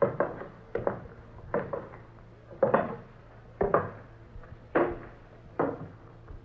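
Radio-drama sound effect of slow footsteps going down wooden steps: single knocks on wood, about one a second, heard through the narrow, dull sound of a 1940s radio recording.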